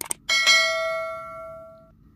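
Two quick clicks, then a bell struck once, ringing and fading away over about a second and a half: a bell-ding sound effect.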